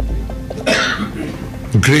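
A single short cough-like burst about halfway through a pause in a man's amplified speech, over faint background music. Speech starts again near the end.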